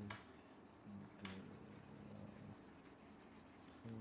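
Faint scratching of several pens on paper as people write and draw, with a couple of light clicks.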